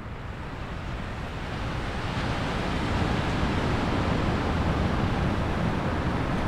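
Ocean surf breaking and washing up a sandy beach, a steady rush that swells over the first few seconds and then holds.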